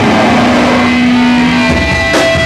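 Loud distorted electric guitar holding one low note for most of the moment, then higher ringing tones near the end, from a live rock band through club amplification.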